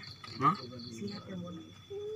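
Crickets chirping: a quick run of short high chirps, about five a second, that stops a little over a second in, over a thin steady high insect trill.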